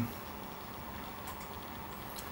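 Quiet, steady room tone: a low hiss with a faint hum, and a couple of faint ticks about a second and a half in.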